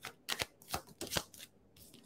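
Tarot cards being shuffled by hand: a string of short, uneven card snaps.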